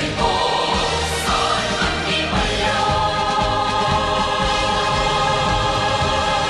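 Choir singing a Korean military song with instrumental accompaniment, settling about halfway through onto a long held chord.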